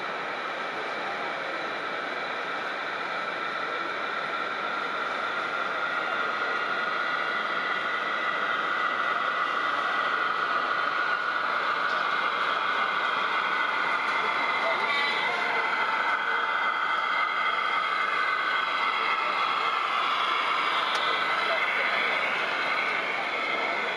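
A model diesel locomotive and its wagons running on an OO-gauge layout, with a faint drifting whine, under the steady chatter of a busy exhibition hall; the whole grows a little louder over the first several seconds as the train approaches.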